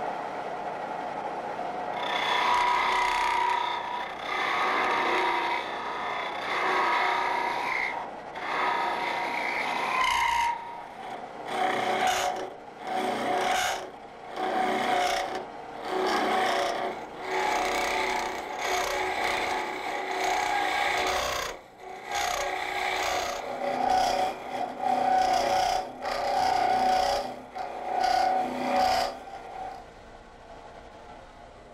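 Hook tool scraping out the inside of a small wooden ornament spinning on a lathe, cutting through the drilled entrance hole. The cut runs steadily for about the first ten seconds, then comes in short strokes about one a second.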